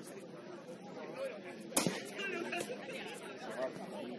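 Indistinct chatter of several players' voices, with one sharp thump a little before the middle.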